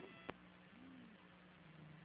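Near silence between commentary transmissions: faint hiss and a low hum on the audio feed, with a short blip right at the start.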